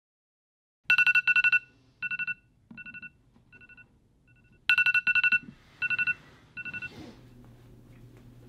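A trilling electronic phone ring, one steady two-tone pitch, goes off in a loud double burst about a second in, followed by three fainter, shorter repeats. It sounds again in a loud double burst near five seconds, then fades over two more short rings, leaving a low steady hum of room tone.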